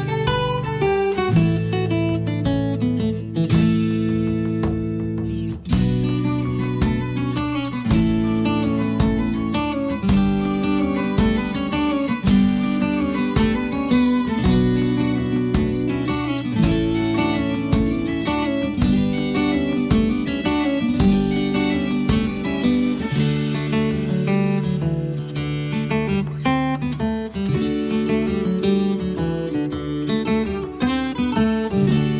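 Background music: acoustic guitar strummed and plucked in a steady rhythm.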